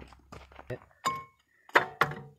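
A steel C-clamp clinks and knocks against a brake caliper as it is set over it to compress the piston. One clink about halfway through rings briefly.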